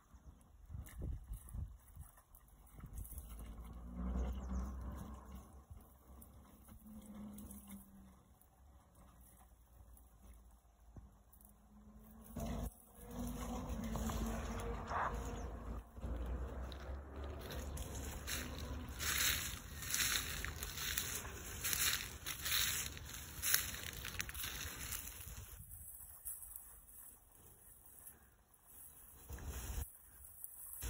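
Wind rumbling on a phone microphone, with bouts of rustling and splashing from a dog wading through flooded reeds. The crackly rustling is densest in the second half and drops away a few seconds before the end.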